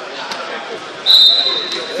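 A high, steady, whistle-like tone starts suddenly about halfway through and holds for about a second, over faint background voices in a large hall.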